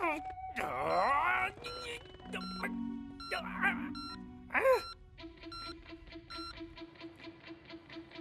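A man groaning with strain, with a few more short grunts, over a cartoon music cue of short beeping notes. The cue settles into a steady pulsing rhythm for the last few seconds.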